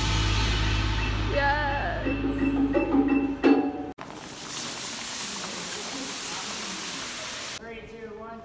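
Mallet percussion and voices in a band room over a steady low hum. After an abrupt cut about halfway, a steady rushing hiss of a large vinyl performance floor being dragged across a tile floor.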